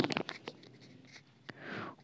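Faint handling noise: a quick run of small scratches and clicks in the first half second, then near quiet, and a soft intake of breath just before speech resumes.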